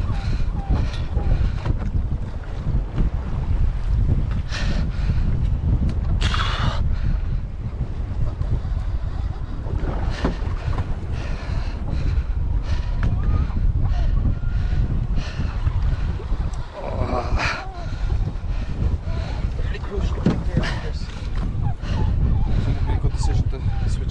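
Wind buffeting the microphone, with an angler's grunts and heavy breaths breaking in every few seconds as he strains on the rod against a big common skate.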